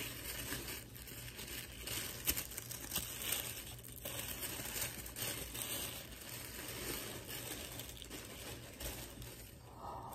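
Tissue paper crinkling and rustling irregularly in bursts of small crackles as a wrapped gift is unwrapped by hand.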